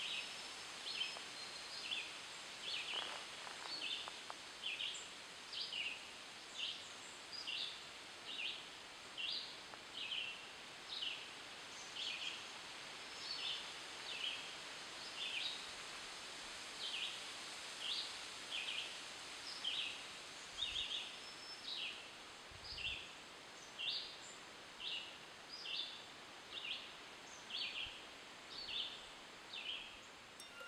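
Outdoor nature ambience: a short, high chirp repeated evenly about once a second, over a faint steady hiss.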